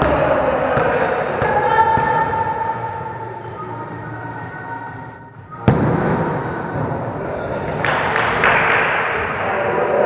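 A volleyball struck once with a sharp slap about halfway through, amid indistinct players' voices on the court.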